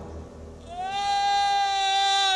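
A man's long, high-pitched scream as he falls: it starts about half a second in, rises briefly, then holds one steady note.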